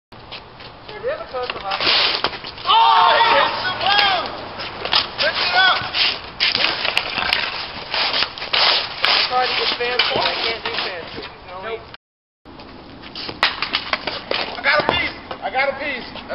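Street hockey being played on concrete: sticks clack and scrape on the pavement and the ball in many quick sharp hits, with players shouting now and then. The sound drops out briefly about twelve seconds in.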